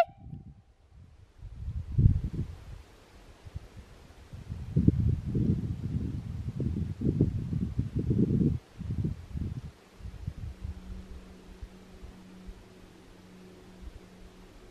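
Wind buffeting the camera microphone in irregular low rumbling gusts, strongest in the middle, dying down to a faint steady low hum for the last few seconds.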